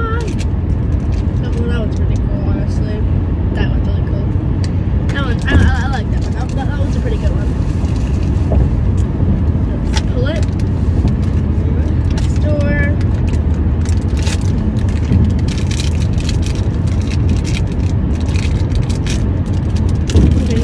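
Steady low road and engine rumble inside the cabin of a moving car, with scattered clicks and crackles of small plastic toy packaging being handled and opened.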